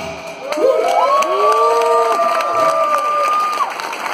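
Concert crowd cheering and shouting once the music stops, with several voices holding long overlapping shouts starting about a second in.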